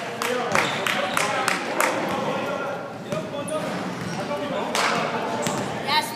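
A basketball bouncing on a hardwood gym floor in irregular dribbles and bounces during play, with players' voices in the background.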